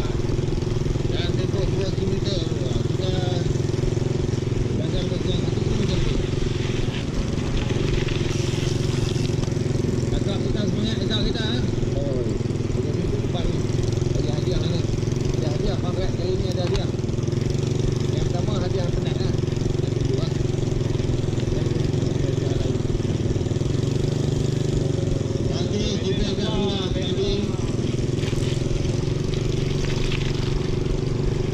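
Small motorcycle engine running steadily at low speed close ahead, heard from a bicycle's handlebar camera over a constant rumble of wind and road noise.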